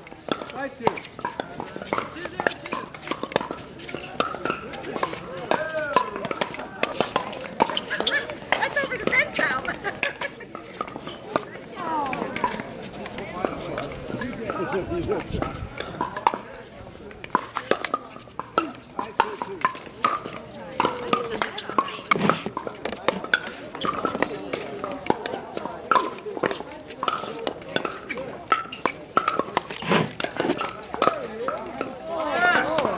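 Pickleball paddles hitting the hard plastic ball: many sharp pops scattered irregularly through the rallies, over people talking.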